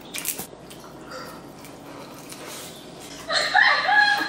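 A bite into a crispy fried egg roll, with a few sharp crackles at the start, then quiet chewing. A woman's voice comes in near the end.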